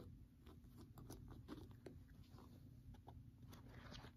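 Near silence with faint, scattered ticks and rustles of a paperback book being handled.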